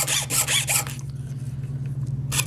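Jeweler's saw cutting through a thin laminate countertop sample: a fast, even rasping of short saw strokes. About a second in it drops to a faint scratching, and it comes back strongly near the end.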